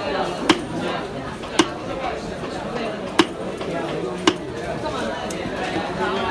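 A large knife chopping through rohu fish and striking a wooden chopping block: four sharp chops about a second to a second and a half apart, over steady background chatter.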